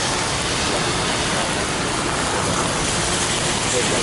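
Steady rain falling on umbrellas and wet pavement, an even hiss.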